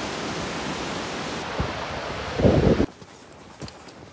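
A mountain river rushing over rocks: a steady, even hiss of water, with a brief low rumble of wind on the microphone about two and a half seconds in. About three seconds in the water sound cuts off abruptly, leaving quieter outdoor sound with a few faint footsteps on a dirt path.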